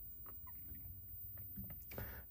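Faint room tone: a low, steady hum with no distinct event.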